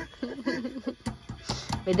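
A metal spoon knocking and scraping inside a tin can while beans are scooped out into a pot: a few short, sharp clicks in the second half.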